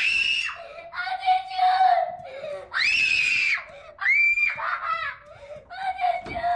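High-pitched voices shouting and screaming, with two long held screams about three and four seconds in.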